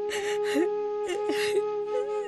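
Background music holding a steady flute-like drone, with three or four short breathy calls over it.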